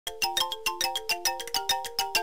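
Short bright musical jingle: a quick, even run of chime-like notes, about seven a second, each struck sharply and fading fast.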